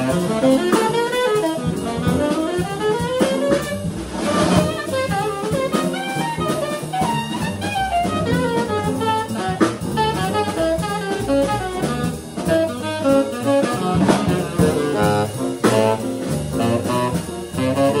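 Live jazz quartet: a saxophone plays quick runs of notes, one climbing run a few seconds in, over piano, drum kit with ride cymbal, and upright double bass.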